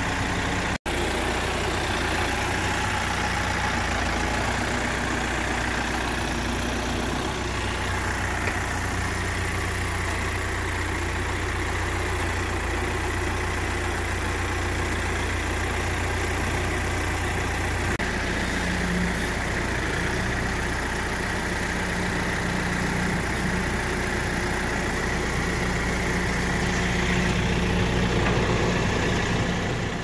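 Kioti RX7320 tractor's diesel engine idling steadily, a low even drone with a brief break about a second in.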